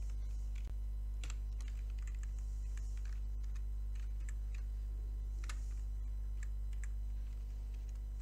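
Computer keyboard typing: irregular, scattered keystroke clicks, some in quick runs, over a steady low hum.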